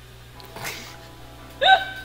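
A woman's short, high-pitched laughing squeal that bursts out near the end, after a breathy half-spoken phrase. Faint music plays underneath.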